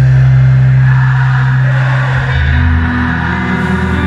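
Live rock band music played loud over a concert hall sound system and heard from the audience. Long held low bass notes drop to a lower pitch about halfway through, under a dense wash of guitars and cymbals.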